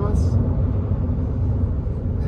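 Steady low rumble of road and engine noise inside the cabin of a 2022 Infiniti QX50 driving at highway speed.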